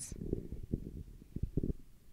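Handling noise from a handheld microphone being passed from one hand to another: a run of irregular low thumps and rumbles, with a few stronger knocks in the second half.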